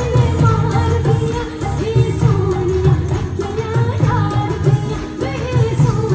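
Live South Asian folk-pop song through a concert sound system: a solo singer's melody over a band with a steady, heavy drum beat.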